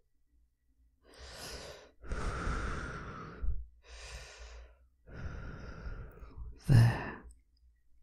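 A man breathing slowly and deeply into a close microphone: two long breaths in and out, then a short voiced sigh near the end, as he leads a deep-breathing calm-down.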